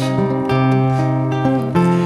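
Cutaway acoustic guitar played fingerstyle as an instrumental bridge between sung lines: ringing plucked chords over a held bass note, with a new chord about half a second in and another near the end.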